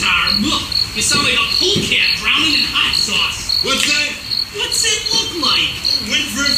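Cricket chirping steadily, one short high chirp about twice a second, over men's voices talking.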